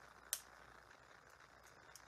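Quiet handling of a roll of glue dots, with one sharp click about a third of a second in and a couple of faint ticks near the end.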